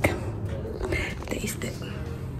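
A young woman's voice speaking softly in short, whispered fragments, over a low steady hum.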